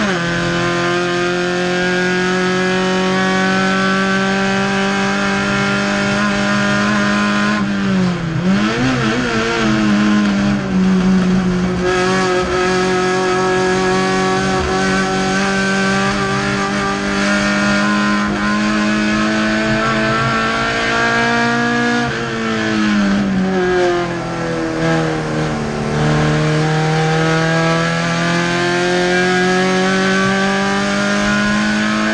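Race car engine heard from inside the cockpit, running hard at high revs with a mostly steady pitch. About eight seconds in, the pitch dips and wavers as the driver lifts and changes gear. Later it falls away twice and climbs again as the car slows for corners and accelerates out.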